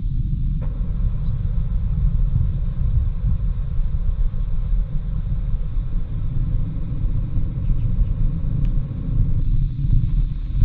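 A steady, loud low rumble with a fainter hiss above it, fluttering in level throughout.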